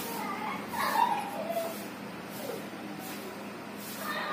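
A short high-pitched cry about a second in, gliding in pitch, with a fainter one near the middle.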